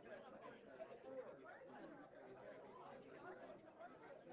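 Faint, indistinct chatter of several people talking at once in a room.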